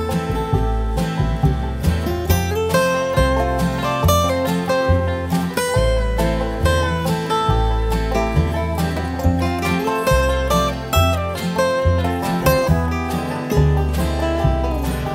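Instrumental break of an acoustic bluegrass-blues band: plucked acoustic guitar, banjo and dobro over a walking upright bass, with a few sliding notes among the picked ones.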